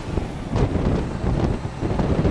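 A moving vehicle heard from inside: a steady low rumble of engine and road noise, with wind buffeting the microphone and a couple of short knocks about half a second and a second and a half in.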